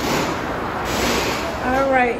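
Steady rumbling din of a theme-park ride loading station, with two short bursts of hiss in the first second or so. Near the end a woman starts speaking close to the microphone.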